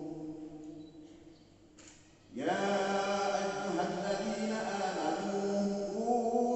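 A man's voice chanting through a microphone in long, held notes. It fades into a short pause, then starts a new phrase about two seconds in that rises in pitch and is held.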